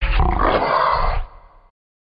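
A loud, gruff outro sound effect that cuts in suddenly, holds for about a second, then fades out.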